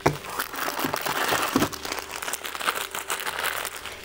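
Plastic instant-noodle packets crinkling and rustling as they are handled and pulled out of a cardboard box, with a sharp crackle right at the start.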